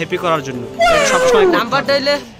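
A man's voice speaking loudly and emphatically, then a long drawn-out wail that falls in pitch about a second in.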